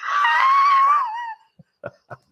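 A man laughing in a high falsetto: one held, wavering note about a second and a half long that drops at the end, followed by a few short breaths.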